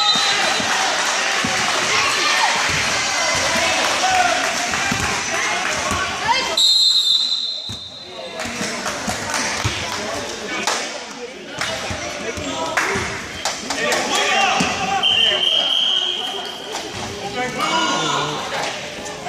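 Basketball being dribbled on a gym floor amid spectators' talk and shouts during a youth game, with a referee's whistle blown once about six seconds in and again about fifteen seconds in.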